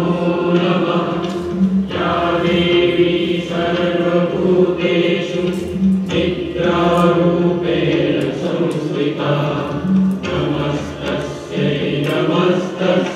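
Devotional singing in a chant-like style, a melody sung over a steady low drone.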